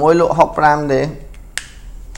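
A man speaking for about a second, then a pause broken by a single sharp click about one and a half seconds in.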